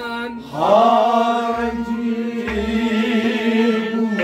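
Male voices singing a Kashmiri Sufi kalam over a harmonium. About half a second in, the voice slides up and then holds one long note.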